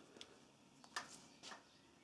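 Near silence, with a few faint clicks and rustles of a rubber-sheathed welding earth cable being handled and coiled.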